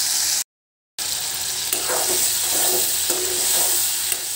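Tomatoes and green chillies sizzling in hot oil in a steel kadhai while a ladle stirs them. The sound drops out completely for about half a second near the start, then the sizzling carries on steadily.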